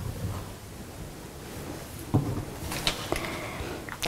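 Faint scratching of a wax art crayon drawn across a board, with a soft knock about two seconds in and a few light clicks near the end.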